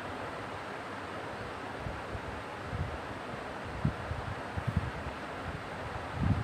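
A pause in speech: steady background hiss with a few soft, short low bumps on the microphone.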